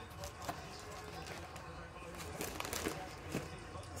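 Quiet room tone with a low steady hum and a few faint clicks.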